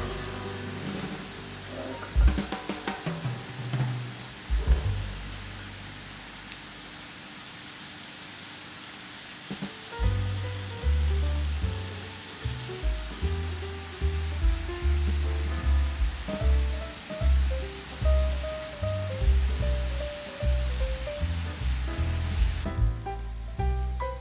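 Thinly sliced beef and onion sizzling in a frying pan, a steady hiss, under background music. The music's bass line and melody come in strongly about ten seconds in and are the loudest sound from then on.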